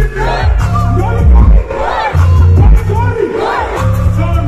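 Loud live hip-hop performance through a concert PA: a bass-heavy backing track with a rapper's voice shouting over it, and the crowd yelling along.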